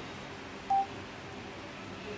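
A single short electronic beep, one steady tone, about a second in, over quiet room hiss.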